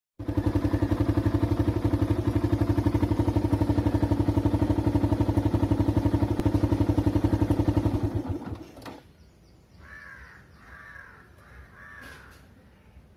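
Yamaha FZ motorcycle's single-cylinder engine idling with an even pulse, then shutting off and dying away about eight seconds in. Near the end a crow caws three times.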